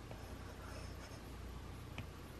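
Faint rustle of paper banknotes being handled, with a few light ticks over a steady low hum.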